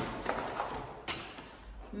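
Brief handling noises as groceries are lifted out of a cardboard box: a couple of short rustles or taps, about a quarter second in and again just after a second.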